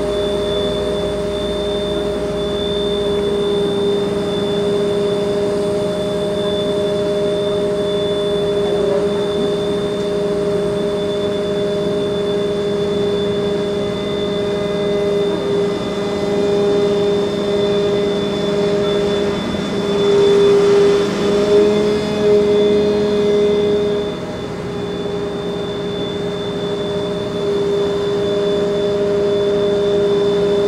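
Fire truck's engine running at a steady speed to drive its aerial ladder: a constant droning hum. It grows louder for a few seconds about two-thirds of the way through.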